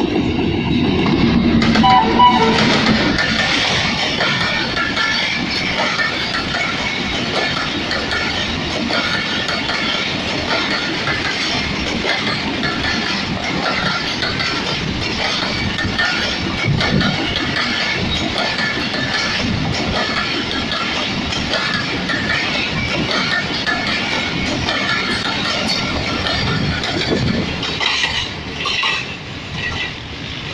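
A passenger train hauled by a Pakistan Railways AGE-30 diesel-electric locomotive passes close by. The locomotive is loudest in the first few seconds, then comes a steady rumble and clatter of coaches rolling over the rails. It drops away near the end as the train moves off.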